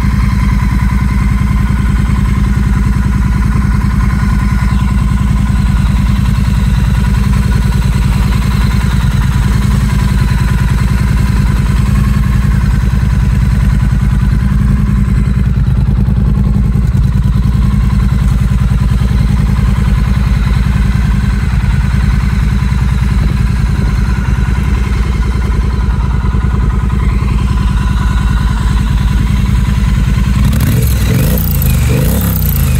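Triumph Bonneville T100's 900 cc parallel-twin engine idling steadily through short-baffle exhausts.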